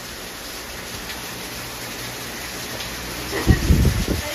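Steady rain falling on wet paving, an even hiss. Near the end, a brief low rumble of thuds.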